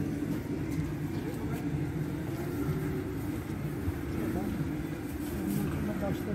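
Busy street ambience: indistinct voices of passers-by over a steady low rumble of traffic.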